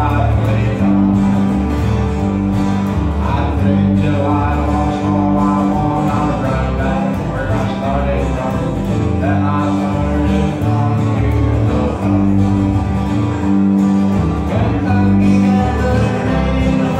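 Live acoustic country band playing: a lead acoustic guitar picking over strummed rhythm guitars, with bass notes changing about once a second.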